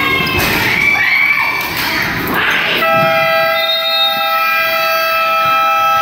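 Spectators and players shouting, then about three seconds in the scoreboard buzzer sounds one steady horn tone that holds to the end, signalling that the game clock has run out on the third quarter.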